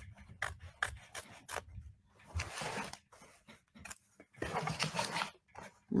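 Scissors snipping fabric in quick small cuts, then two longer rustling, rubbing passages, as the fabric is trimmed close to a stitched embroidery outline.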